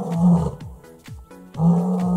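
A lioness roaring in deep grunting calls, one ending about half a second in and the next starting about a second and a half in.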